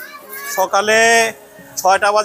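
Speech: a voice talking, with one long held vowel about a second in.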